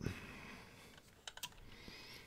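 Faint clicks over low room noise: a short cluster of light taps a little over a second in, and another just before the end.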